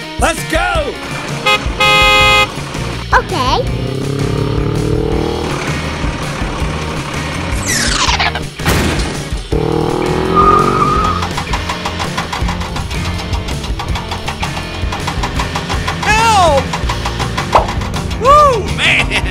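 Dubbed toy-play soundtrack: background music under a running vehicle engine effect, with a loud horn blast about two seconds in and a long falling whoosh near the middle. Short sliding voice-like sounds come and go.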